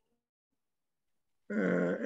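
Dead silence for about a second and a half, then a man's drawn-out hesitation sound "ee" held at a steady pitch.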